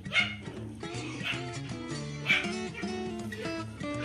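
Newborn puppies giving about three short, high cries over steady background music.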